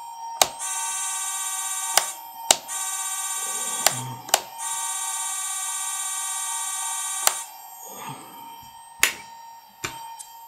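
Electric motors of a 1:14 RC Liebherr LR 634 tracked loader model running in three steady high-pitched buzzes of one to three seconds each, every run starting and stopping with a sharp click. Scattered softer clicks follow near the end as the model sits still.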